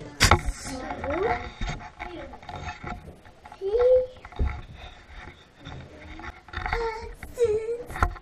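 A young child's wordless vocal sounds, short babbling calls and hums, with handling noise from a hand-held action camera on a selfie stick. A sharp knock sounds just after the start.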